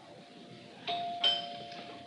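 Two-note doorbell chime, a ding-dong rung about a second in, its tones ringing on afterwards. The last of an earlier ring fades out at the start.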